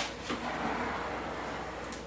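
Faint scraping of a plastic squeegee pressed across vinyl wrap film in small strokes, working out air bubbles, with a sharp click at the very start.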